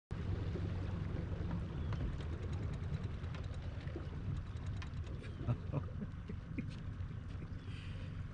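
A boat's outboard engine idling: a low, steady rumble, with scattered light taps and knocks on top.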